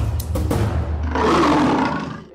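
A lion's roar sound effect that swells up about a second in and fades away at the end, over background music.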